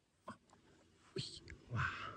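A person whispering a few short phrases, the last one the loudest.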